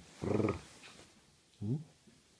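A low adult voice saying "ja", drawn out, then a short vocal sound rising in pitch near the end.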